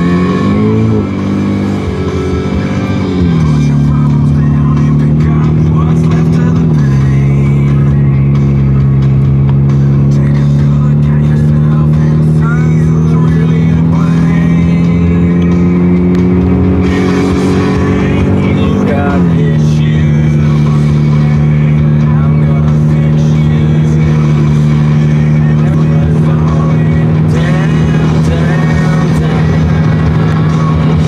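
Car engine heard from inside the cabin, pulling away and accelerating: its pitch climbs, drops at gear changes about three and seven seconds in, climbs slowly for a long stretch, drops again about two-thirds of the way through, and then holds steady at cruising speed.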